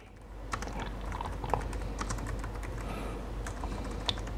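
Typing on a computer keyboard: a steady run of irregular key clicks as text is typed into a form field.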